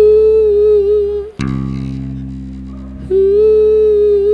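Electric bass holding low droning notes under a held, wordless hummed note with a slight waver. The hummed note comes twice, each time for about a second and a half, and ends with a click.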